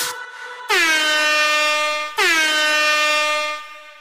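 Electronic beat on the Drum Pads 24 pad app ending on two long horn-like blasts, each sliding down in pitch at its start and then holding. The second fades away near the end.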